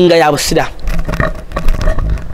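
A man's voice speaking loudly and close into a handheld microphone, opening with a drawn-out, gliding syllable and then breaking into short fragments.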